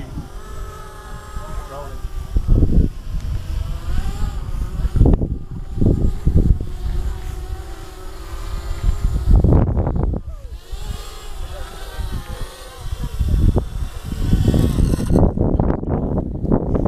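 Small quadcopter's electric motors and propellers whining, the pitch rising and falling as the throttle changes through flips. Gusts of wind buffet the microphone.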